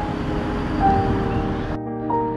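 Background music with slow, held notes over a steady outdoor noise bed, which cuts off abruptly near the end.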